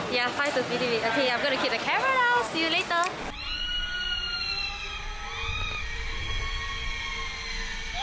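A woman's long, high scream that slowly falls in pitch, then a few shorter wavering cries, heard thinly over a low wind rumble on the microphone.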